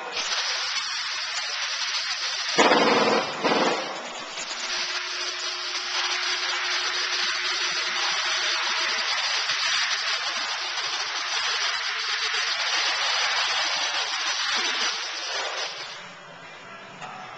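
A steady, loud hiss like rushing air or spray, with a louder, fuller burst about three seconds in; it cuts off sharply near the end.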